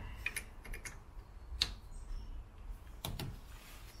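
Peugeot 107's coolant filler cap being twisted back on by gloved hands, giving a few scattered light clicks, the sharpest about halfway through.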